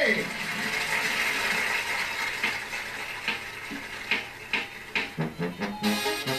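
A few scattered clicks and knocks over a faint hiss, then a brass banda starts playing about five seconds in, with low tuba notes coming in first.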